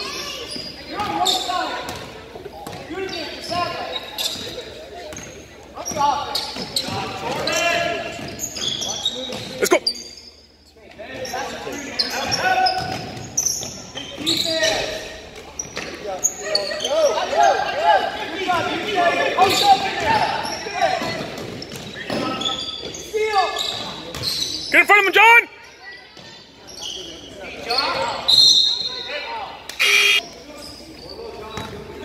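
A basketball being dribbled and bouncing on a hardwood gym floor, a string of short knocks, with players' and spectators' voices shouting and echoing in the large gym.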